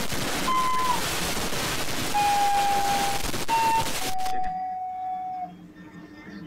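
Loud static-like hiss with a few clicks, over which a series of plain electronic beep tones is held one after another at shifting pitches, the longest two dipping slightly as they end. The hiss cuts off suddenly about four and a half seconds in, leaving the last tone alone and quieter.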